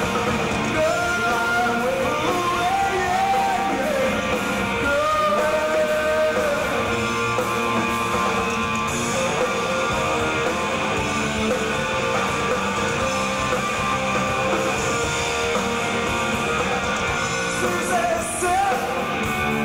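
Rock band playing live: electric guitars, bass and drums, with a sung lead vocal.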